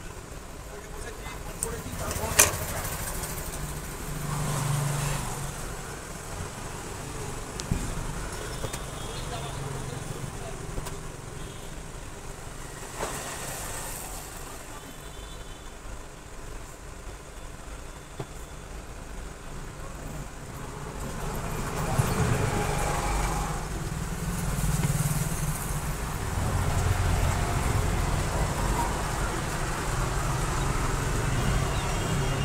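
Tailoring shears set down on a table with a sharp click about two seconds in, then cotton fabric rustling as it is folded and smoothed by hand. Under it runs a steady low rumble that grows louder in the last third.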